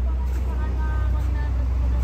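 A steady low engine rumble, like an engine idling.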